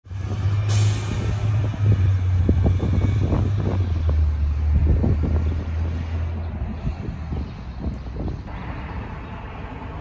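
A transit bus engine running with a low, steady hum that drops slightly in pitch midway and fades out after about seven seconds. Wind gusts buffet the microphone throughout.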